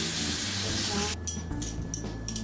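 Water running from a kitchen tap to rinse glass drinking straws. It cuts off just over a second in, followed by a few light clinks of the glass straws being handled.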